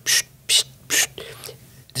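A man's mouth imitating the air motor of a parts-cleaning tank that swishes its basket back and forth: short hissing "tsh" sounds repeated about two a second.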